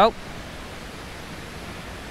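Steady rush of shallow water spilling over the lip of a low concrete spillway.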